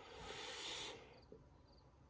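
A soft breath-like hiss for about the first second, then quiet with a few faint, short, high chirps of crickets.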